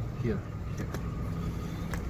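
A vehicle idling: a steady low rumble, with a couple of faint clicks.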